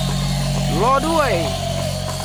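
Steady low hum of a battery-operated walking toy animal's small motor and gears.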